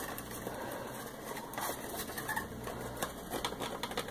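Scattered light clicks and rustling as items are handled in an opened cardboard subscription box, over a faint low hum.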